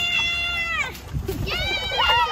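High-pitched, drawn-out human cries: one long held note that falls away just under a second in, then another rising cry starting near the end.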